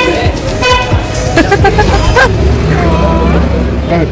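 Voices talking close by. About halfway through, the low, steady rumble of a motor vehicle's engine running close by takes over.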